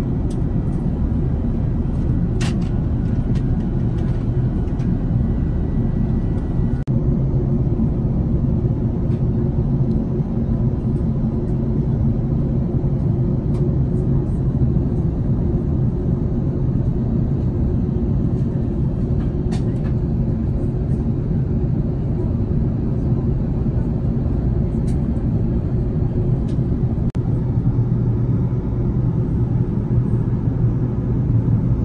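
Airbus A380 cabin noise in cruise: a steady low drone of airflow and engines, with a faint hum and an occasional light tick.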